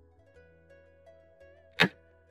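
A single sharp click near the end, the move sound effect of a xiangqi piece being placed on the board, over quiet plucked-string background music.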